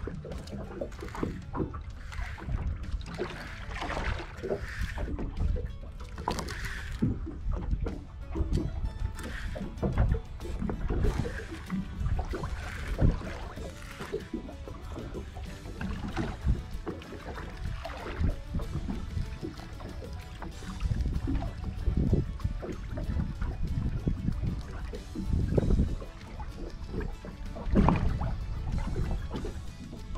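Water lapping and slapping against the side of a small boat, with wind buffeting the microphone, in an uneven run of low rumbles and small knocks. Music plays underneath.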